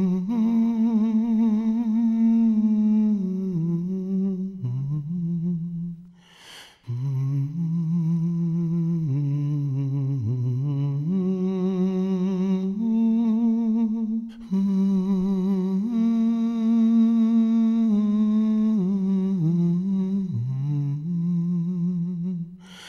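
A man humming a slow, wordless melody in long held notes with vibrato. He pauses and takes a breath about six and a half seconds in.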